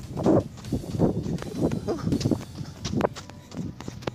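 Footfalls and breathing of a man jogging, picked up by a phone held close to his face, in uneven thuds and breaths.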